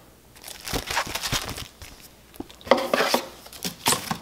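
Crinkling and rustling of a plastic comic-book bag being handled. It comes in two spells of irregular crackles, each a little over a second long.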